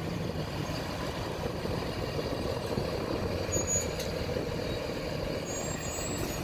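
A large vehicle's engine running steadily close by, with two faint brief high squeaks.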